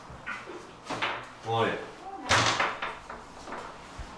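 A door being pushed open and banging shut, the bang the loudest sound, about two seconds in. A voice calls out briefly just before the bang.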